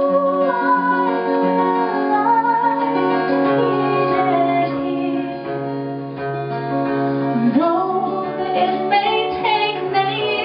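Live acoustic song: a woman's voice singing long held, sliding notes over a strummed acoustic guitar.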